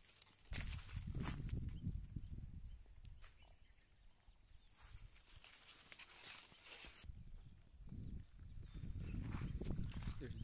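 Outdoor ambience with low rumbling noise on the microphone and scattered clicks. A short, high chirp of about five quick notes repeats every second and a half or so.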